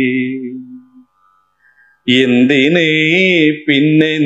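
A man singing lines of a Malayalam poem to a slow, chant-like melody. A held note fades out in the first second, and after a short pause two more long, gently wavering sung phrases follow.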